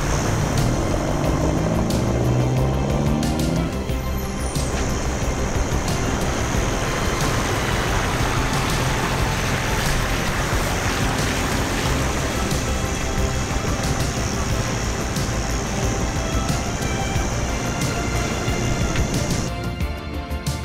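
Mitsubishi Triton 4x4 ute engine revving up as it accelerates over the beach sand for the first few seconds, then steady driving and wind noise.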